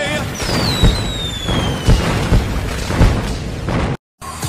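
Animated-show sound effects: a whistle that slides down in pitch over about a second and a half, and several booms and pops about a second apart over a noisy background.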